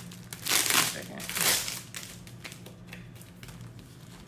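Clear plastic packaging crinkling in two short bursts, about half a second and a second and a half in, as it is handled and pulled off a planner sticker book, followed by quieter rustling.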